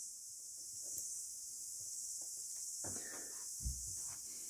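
Quiet handling noise over a steady high hiss: faint rustles as insulated crimp connectors on the wiring are handled, with a brief louder rustle about three seconds in and a soft thump just before the end.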